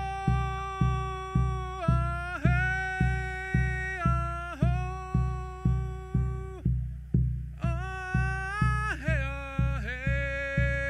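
A man chanting in long held notes that dip and slide between phrases, over a steady drum beat of nearly two strokes a second. It is a healing chant with drum, the voice pausing briefly for breath partway through.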